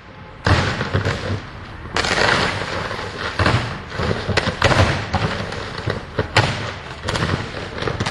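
High-voltage electrical equipment failing and arcing: a loud, continuous crackling and buzzing that starts about half a second in, broken by about half a dozen sharp bangs as it explodes and throws sparks.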